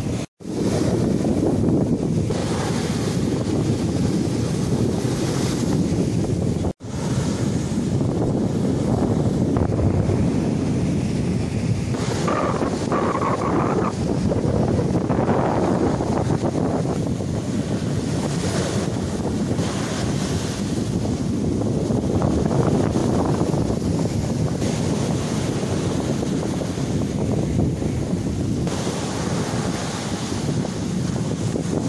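Rough sea surf breaking and washing over a concrete seawall and its concrete blocks, a continuous roar of waves with wind buffeting the microphone. The sound cuts out for an instant twice, just after the start and about seven seconds in.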